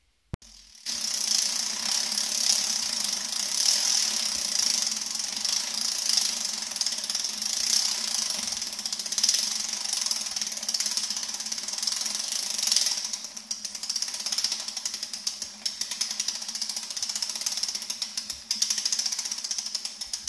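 Bicycle drivetrain spinning on a workstand: a freshly lubricated chain running over Shimano Dura-Ace chainrings, rear sprockets and derailleur pulleys, a steady fast ticking whirr. It starts about a second in and dips briefly twice in the second half.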